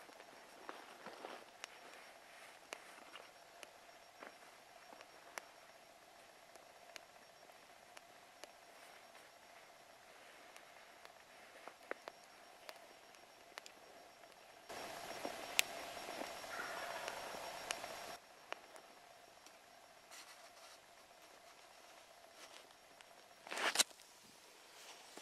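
Faint scattered crackles and ticks from a smouldering long-log campfire. About fifteen seconds in, a brief louder stretch carries a faint distant call that is taken for a wild turkey gobbling, and a handling knock comes just before the end.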